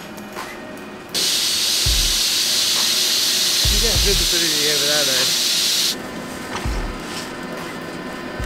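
A loud steady hiss cuts in suddenly about a second in and cuts out just as suddenly some five seconds later. A man's brief remark is heard in the middle of it, with a few low thumps. Faint background music plays around it.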